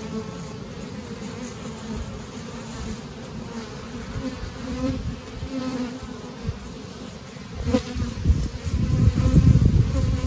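Honeybees buzzing over an open hive: a steady low hum throughout. In the last two seconds a louder low rumbling noise rises over it.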